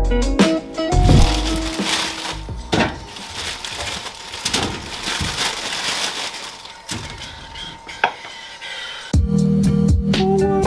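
Background music with a bass line gives way about two seconds in to plastic food-bag crinkling and rustling, with a sharp click about eight seconds in; the music returns near the end.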